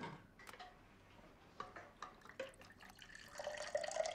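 Water poured from a thermos flask into a cup, its pitch rising as the cup fills near the end. Before it, light clicks and knocks of the flask and cup being handled.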